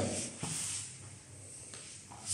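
Faint rustling of jiu-jitsu gi cloth and bodies shifting on a foam mat as two grapplers reset into closed guard, with a soft tap about half a second in.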